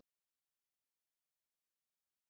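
Silence: the sound track is muted, with no audible sound.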